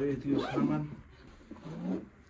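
A man's voice making short wordless vocal sounds, one in the first second and another near the end.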